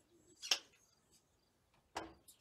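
A short, sharp swish about half a second in and a click near the end, over faint, scattered bird chirps.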